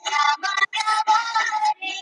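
Song with a singing voice played for dancing, heard thin and without bass through a video call, with brief drop-outs in the sound.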